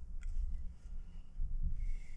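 Hands working paracord strands on a wooden jig, pushing a knot up and cinching it tight: soft low handling bumps with a couple of faint clicks and light cord friction.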